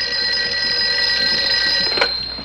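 Desk telephone bell ringing in one continuous ring, which stops right at the end as the receiver is picked up, leaving a brief fading ring.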